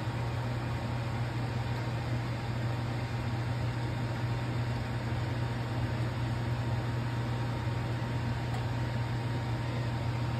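A small motor running steadily: a low hum under an even hiss.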